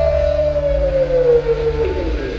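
Live rock band: one long, clear sustained note slides slowly down in pitch over a held chord, and the chord drops out just before the end.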